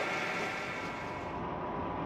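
Krone EasyFlow pickup reel on a BiG Pack baler turning, giving a steady, quiet mechanical running noise.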